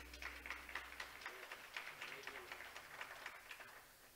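Faint, indistinct speech with soft clicks, and a low hum that cuts off about a second in.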